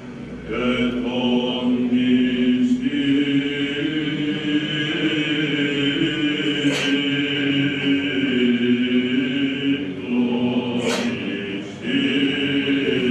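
A group of male chanters singing Greek Orthodox Byzantine chant without instruments, in long held notes over a slowly moving melody. There are short breaks for breath at the start and just before the end.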